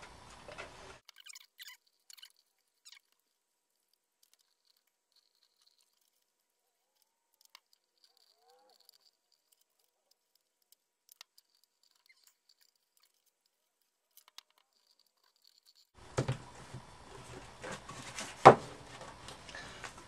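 Mostly near silence with a few faint, scattered clicks. In the last few seconds, handling noise of paper and a ruler on a craft table returns, with one sharp knock.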